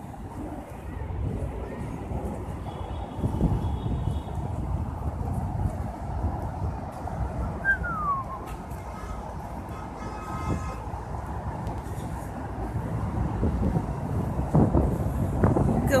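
Outdoor ambience on an open deck: a steady, fluctuating low rumble with faint voices of people around, and a brief falling squeak about eight seconds in.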